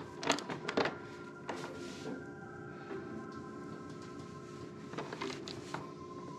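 A few sharp metallic clicks and knocks in the first second and again around a second and a half in, as a bar and digital torque adapter are fitted and worked on a motorcycle's rear axle nut, then quieter handling. Faint background music with held notes runs underneath.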